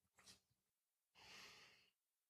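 Near silence, with a faint intake of breath in the second half, just before speech resumes.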